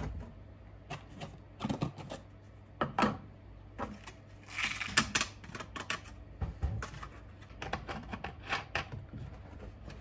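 White fertilizer granules poured from a plastic tray through a plastic funnel into a plastic bottle of water, heard as scattered light clicks and rattles with a denser patter about five seconds in.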